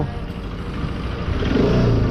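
Bajaj Pulsar RS 200's single-cylinder engine pulling under acceleration on the road, its pitch rising in the second half. The engine revs very high before it cuts.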